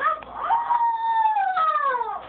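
A young child's whining cry: a short cry, then one long high wail that holds steady and falls in pitch near the end.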